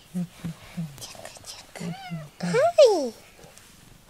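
A cat gives two short meows about two seconds in, each rising then falling in pitch, the second louder. Soft human chuckling comes before and between them.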